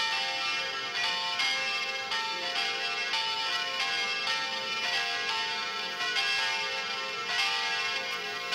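Church bells ringing in a continuous run of strikes, each ringing tone overlapping the next.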